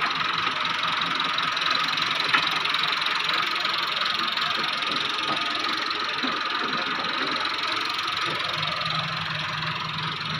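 Machinery running steadily: an even mechanical rushing noise with a constant high whine, and a single sharp click about two seconds in.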